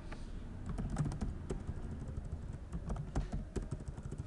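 Typing on a computer keyboard: a run of irregular keystroke clicks, several a second.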